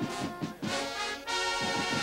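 A marching brass band playing held notes, with two short breaks in the phrase.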